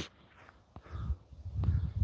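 Footsteps and handling noise from a hand-held phone while walking: a low, muffled rumble begins after a brief near-silent pause, with two faint clicks.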